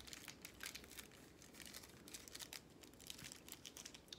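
Faint, rapid crackling of a small shiny candy wrapper being crinkled and peeled open by hand to unwrap a Paçoquita peanut candy.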